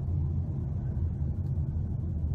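Steady low rumble with no speech.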